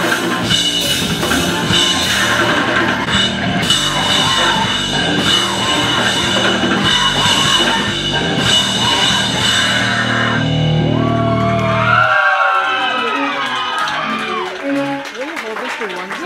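Live cybergrind band playing loud and dense: drum kit pounding with vocals over a noisy backing. About ten seconds in the noisy top drops away, leaving a low steady drone that cuts off suddenly about two seconds later. Short pitched sweeps, rising and falling, follow as the song ends.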